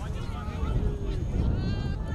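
Wind rumbling on the microphone, with faint distant voices and a high, wavering call near the end.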